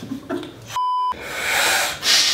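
A single short censor bleep, a steady pure tone about a third of a second long, a little under a second in, with the sound track silenced beneath it as it covers a word.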